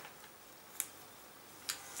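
Two light clicks about a second apart over quiet room tone, from dry pasta being handled on a pasta-covered cardboard cone.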